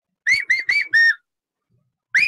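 A man whistling through cupped hands in imitation of a cuckoo's call: four short notes in quick succession, the fourth a little longer. The four-note phrase fits the Indian cuckoo, whose call is rendered 'kaafal paako' in Uttarakhand.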